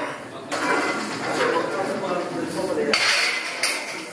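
Loaded barbell and iron plates clinking and rattling as the bar is walked back into the power rack's hooks, with a sharper metallic clank about three seconds in.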